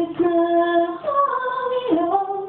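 A woman singing a slow folk song in long held notes, the pitch stepping up about a second in and sliding down near the end.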